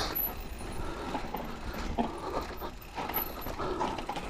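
Electric mountain bike riding down a bumpy dirt trail: tyres on dirt and roots with the bike rattling, and a sharper knock now and then.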